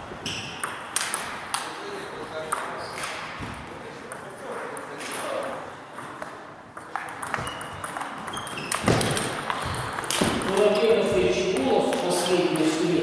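Table tennis balls clicking sharply and irregularly off bats and tabletops during rallies. Voices in the hall grow louder near the end.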